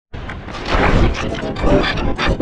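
A loud, rough roar-like sound with a voice mixed into it, starting abruptly after a brief silence.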